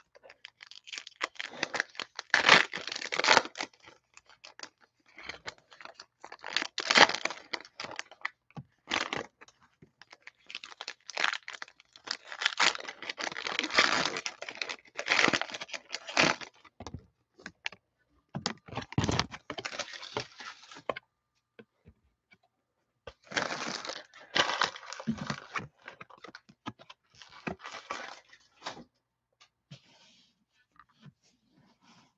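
Foil trading-card pack wrappers of Panini Mosaic football cards being torn open and crinkled by hand, in repeated bursts with short pauses between packs.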